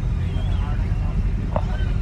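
Low steady rumble of a Daewoo Express coach heard from inside the passenger cabin while it sits in jammed traffic, with faint voices over it.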